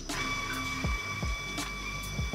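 Motor drive of a Talyrond 585 PRO roundness measuring machine whining steadily as it moves the gauge stylus toward the component, over background music with a beat.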